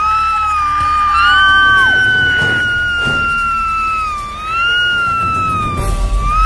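A high, held wailing tone that slides slowly up and down, a cartoon-style scream sound effect, over background music.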